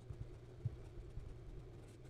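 Faint scratching of a fountain pen's #6 Jowo medium steel nib writing letters on Clairefontaine 90 gsm paper, with a few soft low taps and a steady low hum underneath.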